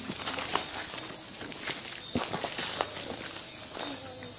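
Footsteps on dry, sandy earth, several uneven steps, over a steady high-pitched insect chorus.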